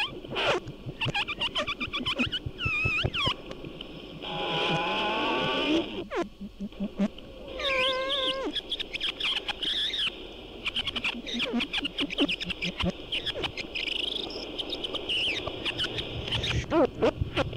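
Experimental multitrack tape collage made with no samples or effects. Warbling pitched tones are layered with rapid clicks and ticks; a pitch rises in a glide about four to five seconds in, and the warbling returns about eight seconds in.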